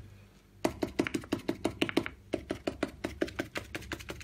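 Stiff bristle brush stabbed against a stretched canvas, dabbing on acrylic paint: a fast run of light taps, about seven a second, starting about half a second in.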